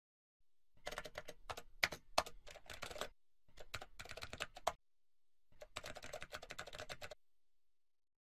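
Rapid computer-keyboard typing clicks in three quick bursts, with short pauses between them.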